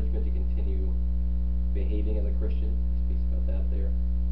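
Steady electrical mains hum with a stack of steady overtones, the loudest sound throughout, with a faint voice speaking in three short stretches over it.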